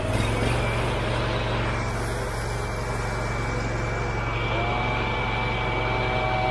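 Honda engine of a trailer-mounted pressure washer running steadily while it warms up just after starting. A faint thin whine sits over the engine for most of the time.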